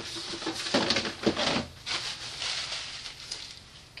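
Knocks and scraping of a plastic wash basin, with bottles of soap and lotion in it, being put into a bedside cabinet drawer. There are a few short clunks in the first two seconds, then softer handling noise.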